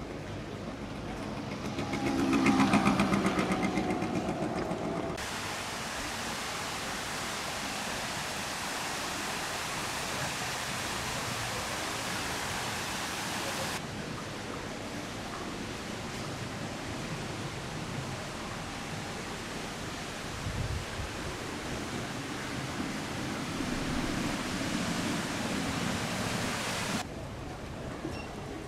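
A vehicle passes close by with its engine note dropping in pitch; then water falls in a steady splashing sheet down a water-wall fountain, a continuous hiss that runs on after a cut.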